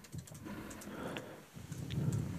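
Quiet room tone with a few faint clicks.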